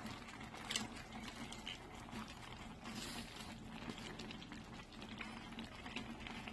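A full pot of sour salmon soup simmering, with faint steady bubbling and small scattered pops.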